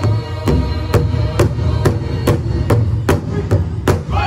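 Powwow big drum struck in unison by several drummers with beaters, a steady beat of a little over two strokes a second that grows louder and slightly quicker toward the end, with the singing dropped low under it.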